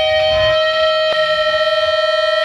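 Electric guitar feedback held as a steady, high, whistling tone with a few higher overtones, with no drums or riffing under it. Another higher tone joins about half a second in, and there is a faint click just past a second.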